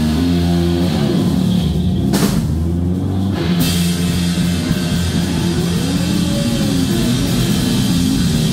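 Live rock band playing loudly: electric guitar, bass guitar and drum kit, with sustained low bass notes under the guitar. There is a cymbal crash about two seconds in.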